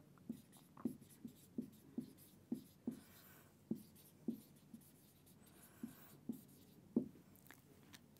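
Marker pen writing on a whiteboard: faint, irregular short strokes and squeaks as letters are written, one or two a second, with a short pause a little past the middle.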